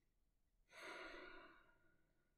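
A man's slow, deep breath out, about a second long, starting under a second in and fading away.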